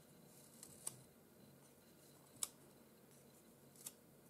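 Ivory pastel pencil being sharpened to a fine point: three short, faint clicks about a second and a half apart over near silence.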